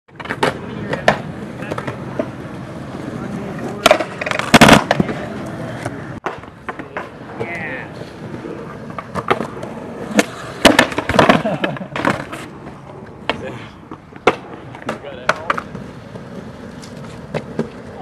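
Skateboard wheels rolling on smooth concrete, broken by sharp clacks of the board's tail popping and the board landing during flatground tricks. The loudest cluster of clacks comes about four to five seconds in.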